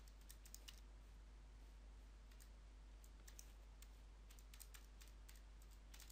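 Faint, irregular clicks of calculator buttons being pressed, a few at a time, in near silence.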